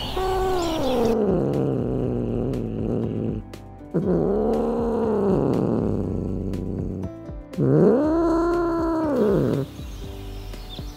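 A cat giving three long, drawn-out meowing calls. The first falls steadily in pitch; the next two rise and then fall, and the last is the loudest.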